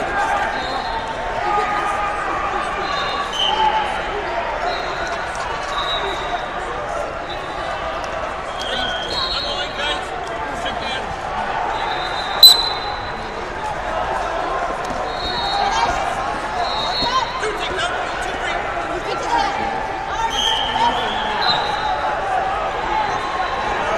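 Busy wrestling tournament hall: a steady murmur of voices, thuds, and many short high whistle blasts from referees on the surrounding mats. A single sharp smack about halfway through is the loudest sound.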